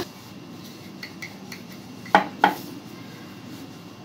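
Two quick hard knocks, about a third of a second apart, a little over two seconds in, from a wooden rolling pin against a marble rolling board, with a few faint ticks of handling around them.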